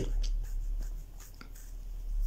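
Low steady hum with faint scratchy rubbing and a few light clicks about a second in, from a hand rubbing the face close to the microphone.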